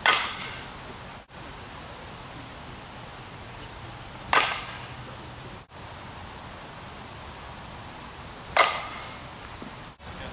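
Three sharp smacks about four seconds apart, each ringing out briefly, over a steady hiss. The sound drops out for a moment after each smack.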